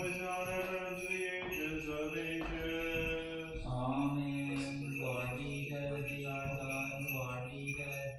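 Orthodox liturgical chant: voices singing long, slow held notes that step in pitch a few times. The last note is held for about four seconds.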